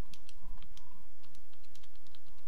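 Calculator keys being pressed in a quick, irregular run of small clicks over a steady low hum, as a long expression is keyed in.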